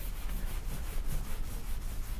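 Marker pen rubbing across a whiteboard as it draws, in a run of short scratchy strokes.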